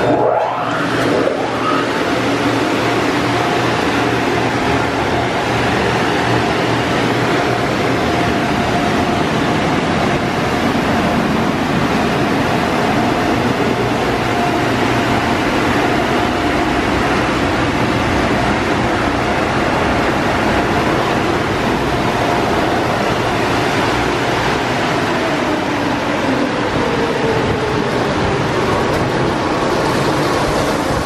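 Water sprays from the overhead gantry of a PDQ Tandem RiteTouch automatic car wash onto a car during a rinse pass, a loud, steady hiss of spray on the bodywork. Under it runs a faint machine hum that slides down in pitch near the end.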